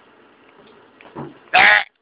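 A goat bleating: a quieter call about a second in, then one short, very loud, wavering bleat that cuts off suddenly.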